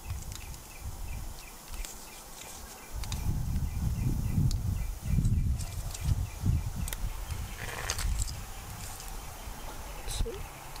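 Plumber's PTFE tape being wrapped around a threaded metal pipe fitting by hand, faint crinkles and small clicks, with a short rustle near the end. A low rumble on the microphone swells through the middle, and insects tick faintly in the first few seconds.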